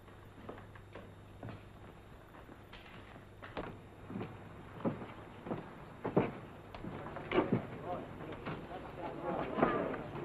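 Boot footsteps on a wooden floor and boardwalk: a run of sharp knocks about two a second that get louder from a few seconds in, over a low steady hum.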